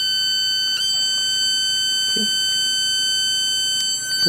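Steady, high-pitched, annoying whine from the pulse-driven bi-toroid transformer's ferrite cores, the metal of the transformer itself singing. The pitch steps up slightly just under a second in.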